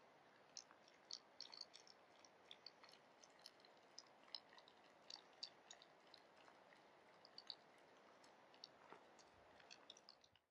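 Finnish Spitz gnawing and mouthing a feather: faint, irregular small clicks and crackles, several a second at times.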